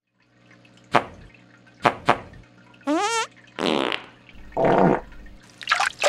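Cartoon underwater sound effects: short gurgling bubble noises over a low steady hum, with a wavy sound rising in pitch about three seconds in.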